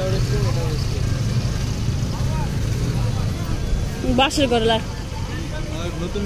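Street ambience: a steady low rumble of road traffic under people's voices, with one voice speaking clearly about four seconds in.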